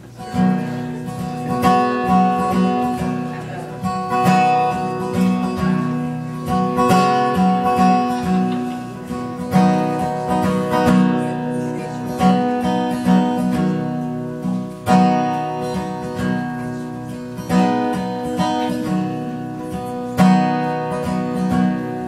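Acoustic guitar played solo, strummed in a steady, repeating chord pattern as a song's instrumental intro.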